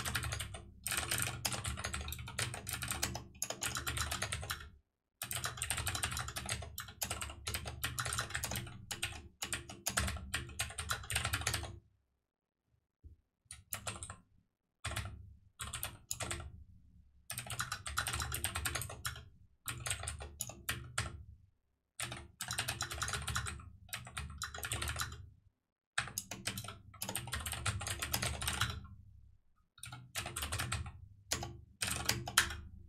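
Typing on a computer keyboard: fast runs of keystrokes lasting several seconds each, broken by brief pauses, the longest about two seconds a little before halfway.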